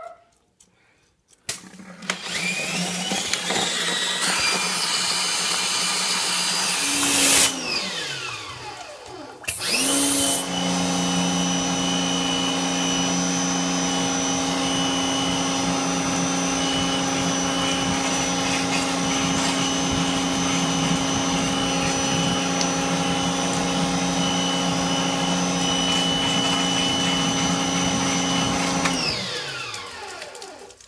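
Electric motor of drain-clearing equipment working a clogged sink drain line. It spins up about two seconds in, runs for some five seconds, winds down, then starts again and runs steadily until it winds down near the end.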